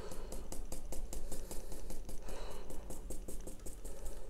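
Paintbrush dabbing on watercolour paper: a run of light taps, several a second, over a low steady hum.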